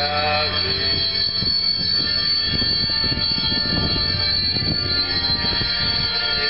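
Church bells ringing continuously, a dense blend of many sustained, overlapping ringing tones, over low crowd noise.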